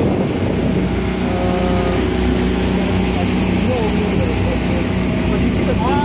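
A boat's motor running steadily underway, a constant drone with a low hum, mixed with the rush of wind and water.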